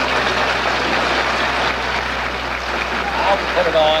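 A large audience applauding and laughing, a dense, steady patter in an old archival recording. A man's voice begins speaking near the end.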